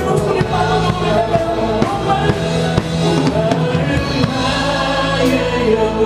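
Live worship band playing a contemporary Christian praise song: a drum kit with cymbals, guitar and many voices singing. A sustained low bass note comes in about four seconds in.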